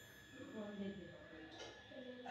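Faint, distant human speech over quiet room tone.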